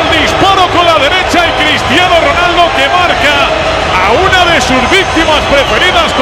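Spanish-language TV football commentary: a commentator talking continuously over a steady background of stadium noise.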